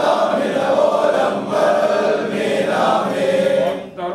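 Congregation of men chanting a church hymn together in unison, many voices blended; the sung phrase breaks off near the end.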